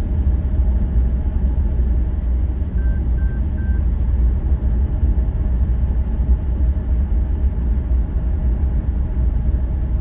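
Steady low rumble of road and engine noise inside a car cruising at highway speed. Three short faint beeps sound about three seconds in.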